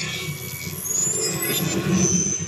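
Movie-trailer sound effects: a low rumbling drone with a high tone that glides upward about a second in, swelling louder toward the end.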